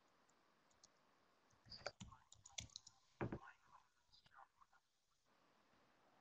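Faint clicks and knocks over near silence, bunched together for a few seconds in the middle, with a brief indistinct murmur among them.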